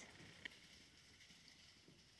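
Near silence: faint room tone, with one small click about half a second in.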